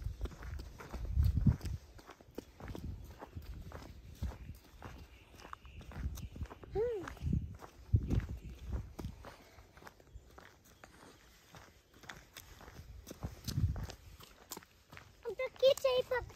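Footsteps walking on a paved path, with a few low thuds. A brief high voice sounds about seven seconds in, and again near the end.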